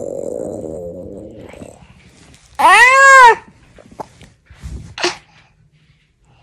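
A toddler's playful vocal sounds: a rough, raspy noise for about the first two seconds, then a loud high squeal that rises and falls in pitch about two and a half seconds in, and a short softer sound near five seconds.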